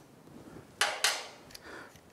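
Hand tools being handled at a motorcycle's front brake caliper: one short scraping clatter about a second in, as a socket extension with a hex bit is picked up and fitted to a caliper pin.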